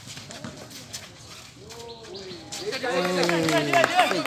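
Voices shouting out during a basketball game: long drawn-out calls that start about halfway through and grow loud in the last second or so, after a few short taps and scuffs from play on the court.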